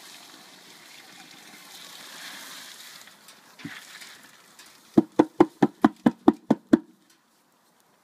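Soaked hemp seed and tares with their soaking water pouring from a bucket into a pan of hot water, a steady wet rushing for about three seconds. Then a single knock, and about five seconds in a quick run of about ten sharp knocks, about five or six a second, as the last seeds are knocked out of the bucket.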